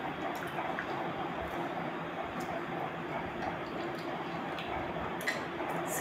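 Soft, wet mouth clicks of someone chewing dried cranberries, a few scattered smacks over a steady background hiss.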